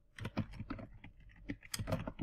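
Typing on a computer keyboard: a quick run of keystrokes, about five a second.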